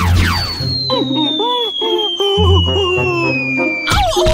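Cartoon falling whistle for a durian dropping out of the sky: one long tone gliding slowly downward for about three and a half seconds over background music with a melody and bass.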